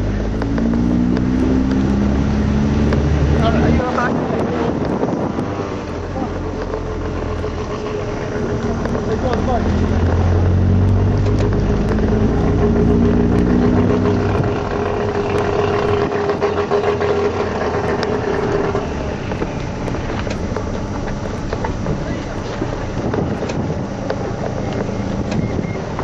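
Audi TT engine heard from inside the cabin, its pitch rising twice as the car accelerates, then running at a steady pitch for several seconds before easing off.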